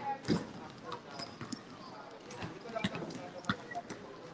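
Several basketballs bouncing on a concrete court, irregular thuds from different balls, under children's voices.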